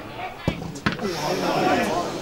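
A leather football struck hard at a free kick: a sharp thud about half a second in, a second sharp thud just after, then voices of players and spectators.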